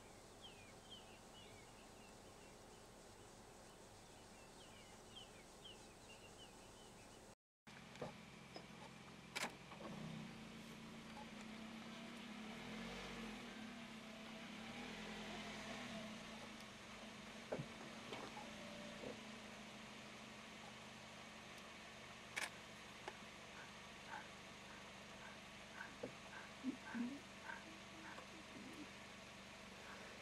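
Faint ambience with a low, steady vehicle engine idling. The hum is strongest from about ten seconds in, with scattered clicks and short bird chirps in the later part.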